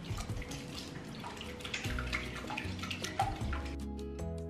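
Wire whisk beating a liquid egg mixture in a glass bowl: quick clicks of the wires against the glass and sloshing of the liquid.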